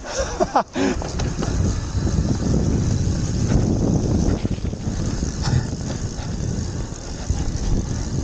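A Graziella city bike descending a dry, rutted dirt trail at speed: a continuous rumble and rattle of tyres and frame over the ground, mixed with wind buffeting the microphone.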